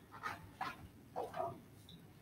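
A pause in a quiet room, broken by a few short, faint vocal sounds, including a man's hesitant "um" about a second in.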